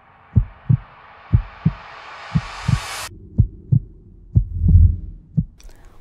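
Heartbeat sound effect: a double low thump about once a second, over a rising whooshing swell that builds and cuts off suddenly about three seconds in.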